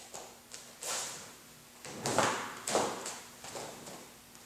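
Bare feet shuffling and stepping on foam floor mats, with the swish of a karate uniform, as a fighting stance is taken. There are a few soft scuffs, the loudest about two seconds in.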